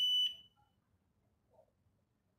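HF4000 Plus fingerprint scanner's buzzer giving a single steady high-pitched beep as a finger is pressed on the sensor for verification, cutting off about half a second in; then near silence.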